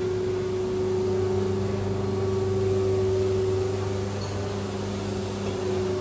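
Steady mechanical room hum of air conditioning and refrigerated drinks cabinets: a constant low hum with a steady higher tone over an even hiss.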